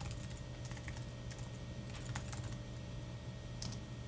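Typing on a computer keyboard: scattered, irregular keystrokes with a steady low hum underneath.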